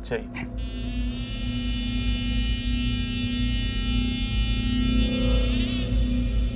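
Background music of a TV drama: a sustained dramatic synthesizer chord held over a low drone, starting just after the last line and wavering as it cuts off near the end.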